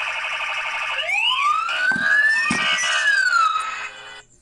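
Electronic siren sound effect over a news logo: a rapidly pulsing alarm tone, then from about a second in several overlapping siren wails that rise and fall, with two low hits. It cuts off suddenly just before the end.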